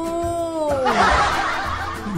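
Edited-in comedy sound effect over background music: a pitched tone sliding downward over the first second, then a snickering laugh.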